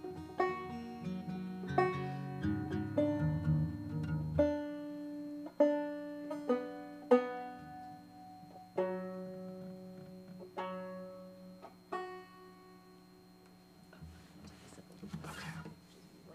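Stringed instruments being tuned: single notes plucked one at a time, each left to ring out, with the pitch nudged between plucks. The plucking is busier and louder at first and sparser later, and there is a short rustle near the end.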